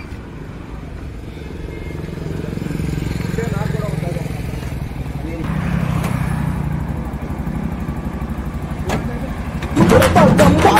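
Small auto rickshaw engine running, a steady low putter that builds about a second in and swells a little around the middle.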